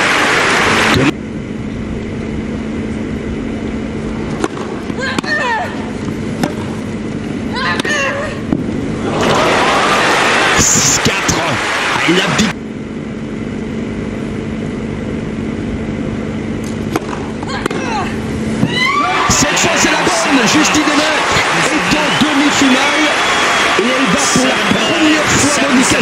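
Tennis stadium crowd: a quieter stretch with a burst of crowd noise midway, then from about three-quarters of the way in a sustained loud ovation of applause and cheering as match point is won and the match ends.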